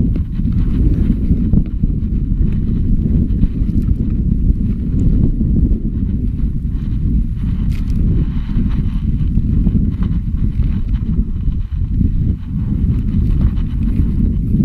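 Wind buffeting the handlebar-mounted GoPro's microphone: a loud, continuous low rumble that surges and dips unevenly.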